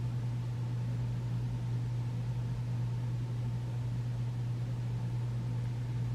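Steady low hum with a faint even hiss underneath, unchanging throughout; no marker strokes stand out.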